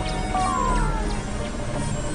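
Experimental electronic synthesizer music: a dense, noisy drone over low bass notes that shift in steps, with a short tone gliding down in pitch about a third of a second in.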